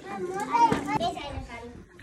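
Small children talking and chattering in high-pitched voices.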